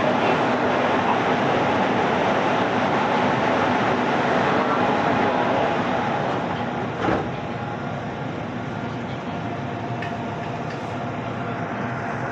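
Electric commuter train heard from inside the carriage at a station platform: a steady hum and rumble of running equipment, with a single clunk about seven seconds in, after which it is quieter.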